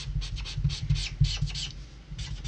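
Copic marker nib scratching on paper in quick, repeated short strokes while blending ink, over a steady low hum.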